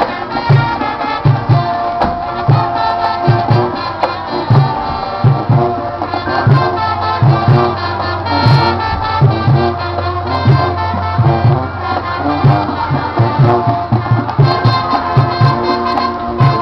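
High school marching band playing: brass with sousaphones on held notes over a steady beat of bass drum hits.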